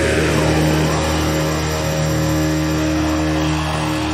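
Black metal music: distorted electric guitars and bass holding long sustained notes, with a brief sliding note about a second in and a change of chord near the end, without drumming or vocals.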